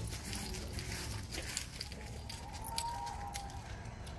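Outdoor background with a steady low rumble and scattered light clicks and crackles, such as phone handling and steps. A faint held tone comes in for about a second past the middle.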